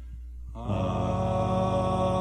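A cappella choir holding a sustained chord at the close of a hymn. A soft low note is held, then a little over half a second in the fuller, louder chord comes in and holds steady.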